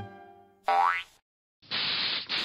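A cartoon boing sound effect, a short springy tone rising in pitch, about two-thirds of a second in, as a jazz music cue dies away. Near the end a steady hiss starts, the spray of a paint spray gun.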